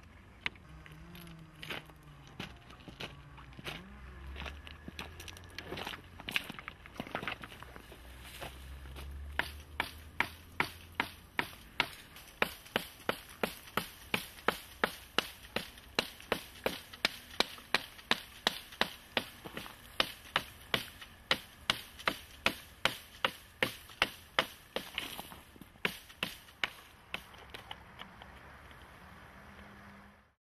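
Hafted stone tool chopping into wood: a fast, very regular series of sharp chops, about two to three a second, starting about ten seconds in and stopping a few seconds before the end. A few scattered knocks come before the run of chops.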